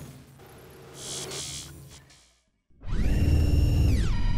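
Logo-animation sound effect: a faint hiss with a soft whoosh, then, nearly three seconds in, a loud, steady electronic buzz.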